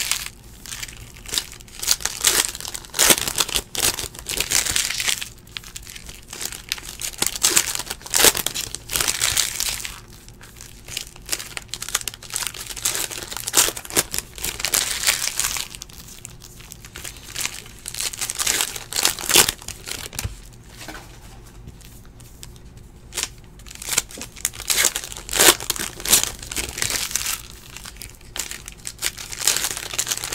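Foil trading-card pack wrappers crinkling and tearing as packs are ripped open, in irregular bursts, with cards being handled and shuffled in between.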